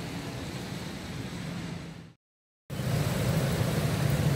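Steady city traffic noise: engines and tyre hiss on a wet road. It fades out about halfway, there is a brief dead gap, and then the traffic comes back louder and closer.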